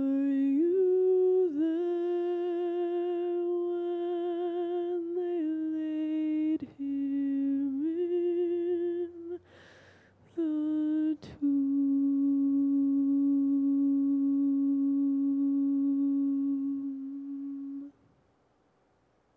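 A single unaccompanied voice hums a slow, wordless melody in long held notes with vibrato. It pauses briefly twice for breath and ends on a long low note that fades out.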